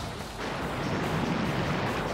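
Rough, storm-driven surf breaking, heard as a steady wash of noise with wind on the microphone.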